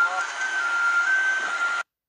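Jet aircraft engine running nearby: a steady high whine that steps between two close pitches over a rushing noise, with wind on the microphone. The sound cuts off abruptly just before the end.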